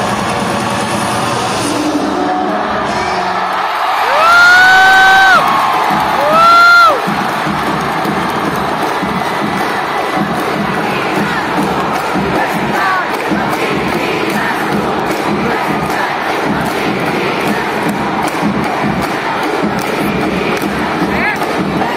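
Large arena crowd cheering and shouting as a cheerdance routine ends. Two loud held calls, each rising in pitch and then falling away, cut through about four and six seconds in. After them the cheering continues steadily.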